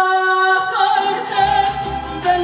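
A woman's live ranchera vocal holds one long steady note, then the mariachi accompaniment of violins and trumpet with a rhythmic strummed beat and a low bass line comes in fuller about a second in.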